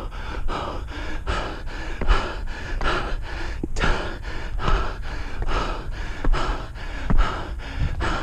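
A runner's hard, rhythmic breathing close to the microphone, about two to three gasping breaths a second from the effort of running up a steep stair climb, with soft footfalls on the wooden steps.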